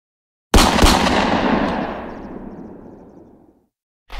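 A loud blast: two sharp bangs about a third of a second apart, followed by a long rumbling echo that fades out over about three seconds.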